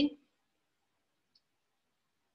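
Near silence in a pause between spoken phrases, broken only by a single faint, short click about one and a half seconds in.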